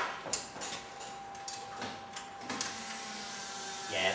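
A few light clicks and taps of hand tools on metal in the engine bay while the fuel pressure regulator is adjusted and its lock nut set, over a faint steady tone.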